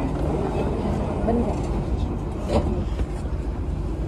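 Steady low rumble inside a Dubai Metro train cabin at a station as the doors close, with a brief knock about two and a half seconds in.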